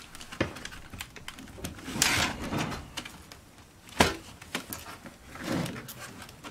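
Plastic laptop chassis being handled and shifted on a wooden workbench: scattered clicks and taps, a brief rubbing rush about two seconds in, and a sharp knock about four seconds in, the loudest sound.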